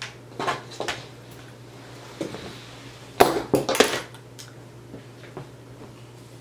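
A few short clicks and light knocks, most of them in a cluster about three seconds in, over a faint steady hum.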